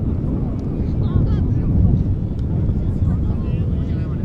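Wind buffeting the camera microphone, a loud steady low rumble, with faint shouting voices of players on the pitch breaking through about a second in and again near the end.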